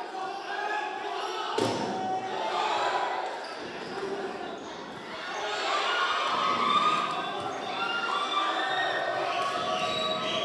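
Volleyball rally in an echoing indoor hall: the ball is struck hard with one sharp smack about one and a half seconds in, over a steady din of players' shouts and crowd voices.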